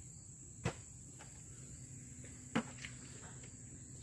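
Steady high-pitched insect chirring, typical of crickets, with two sharp knocks about two seconds apart.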